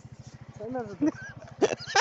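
Motor-scooter engine idling with a rapid, even low pulse, with people's voices talking over it in the second half.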